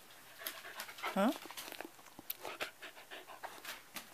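A Shetland sheepdog panting as it trots up close, with its nails ticking on the hardwood floor.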